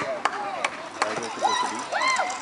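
Players and spectators calling out at an outdoor netball game, with a few sharp knocks or taps in the first second.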